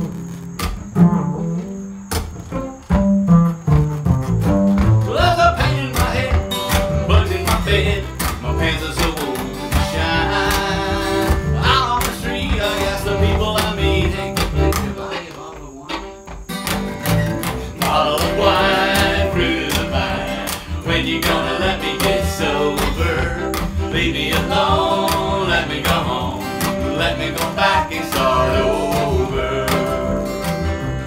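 Acoustic string band playing live: a plucked upright bass leads in the first half. After a short lull about halfway, the fiddle, acoustic guitar and bass play together under two voices singing.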